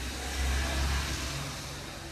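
Steady low hum with an even hiss, swelling slightly about half a second in, during a pause in speech.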